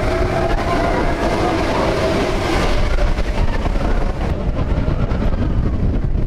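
Expedition Everest roller coaster train rolling along its steel track: a steady, loud rumble of wheels on rail.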